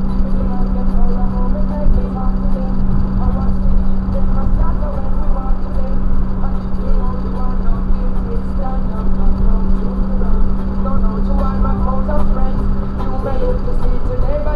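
BMW E36 M3's inline-six engine and its tyres droning steadily at highway cruising speed, heard from inside the cabin, with a voice-like sound over the drone.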